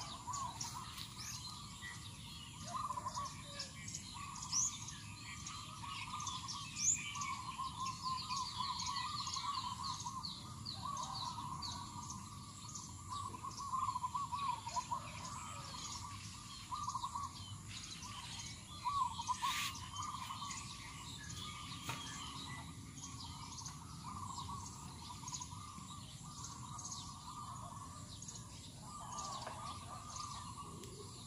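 Several birds chirping and calling among the trees, with many short high chirps and a lower warbling call, over a faint steady background hiss.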